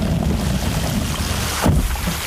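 Water sprayed onto a plastic-wrapped microphone to imitate rain: a steady, dense hiss of drops with a heavy low rumble as the spray strikes the mic directly, and a brief louder burst near the end.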